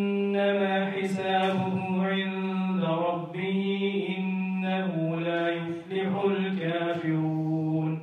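Arabic Quranic verse chanted by a single voice in melodic tajweed recitation, with long held notes, breaking briefly for breath about three and six seconds in.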